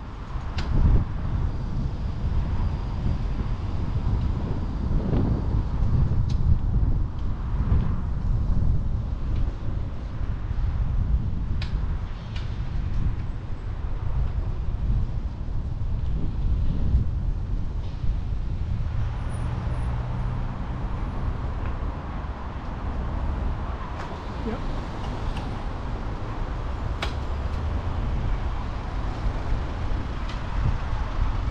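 Road traffic noise from cars around, heard from a moving bicycle, with wind rumbling on the microphone throughout. A few short sharp clicks are scattered through it.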